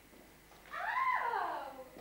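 A single drawn-out vocal call from a person, rising and then falling in pitch and sliding down at the end, lasting about a second and starting a little under a second in.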